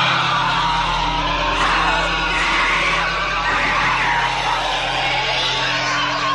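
Pod-person scream: a loud, wavering, inhuman shriek that starts suddenly and is held without a break. It is the cry a pod person gives while pointing out a human who has not yet been replaced.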